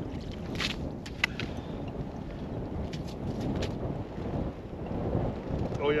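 Wind buffeting the microphone, a steady low rumble, with a few short clicks and scrapes during the first few seconds.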